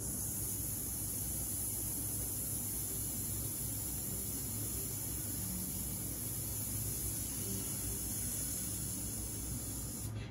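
A long, steady 'sss' hiss of breath pushed out between the teeth, the hissing exercise of a singer's breath-control warm-up. It starts sharply and holds even, with no pitch, until the breath is let go at the end.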